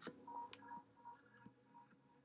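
A sharp click at the start, then a run of several faint, short electronic beeps, all at one pitch.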